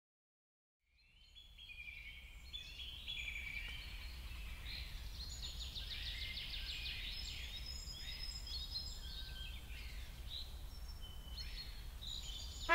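Several birds chirping and singing, with quick, repeated trills, over a low steady rumble of outdoor background noise. It begins about a second in, after silence.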